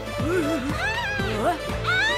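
Cartoon characters' wordless gibberish voices: short squeaky calls that glide up and down in pitch, with one lower call near the start and higher ones after, over background music with a steady beat.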